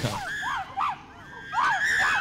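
Primates screaming at the capture of a colobus monkey by a hunting chimpanzee: a run of short, high, arched screams, then a longer, louder scream near the end.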